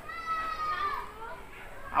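A child's voice calling out: one drawn-out high-pitched call of about a second that dips in pitch at its end.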